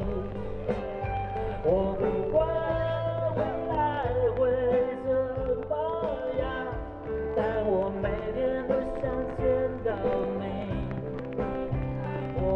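Live band music through a PA, with a sung melody line carried over guitars, bass and drums.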